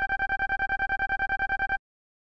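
Retro video-game style text-scroll sound effect, the blip that plays as a dialogue box types out its message letter by letter. It is a rapid run of identical short beeps at one pitch, about ten a second, that cuts off near the end as the text finishes.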